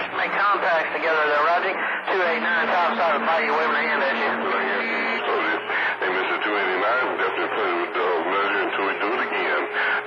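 Voices coming over a CB radio receiver on channel 28 skip, too garbled to make out, with a steady low tone under them for about three seconds, starting around two seconds in.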